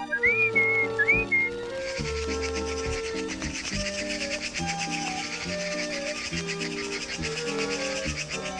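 Cartoon background music with held notes, opening with two short rising-and-falling whistle-like glides; from about two seconds in, a fast fluttering high-pitched rustle runs under the music.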